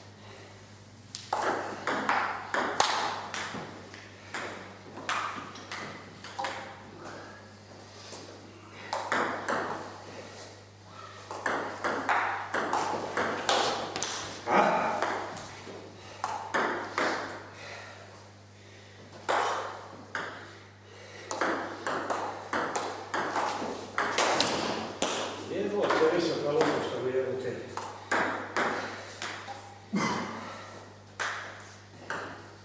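Table tennis rallies: the ball clicking back and forth off the paddles and the Butterfly table top in several bursts of rapid knocks, with short pauses between points.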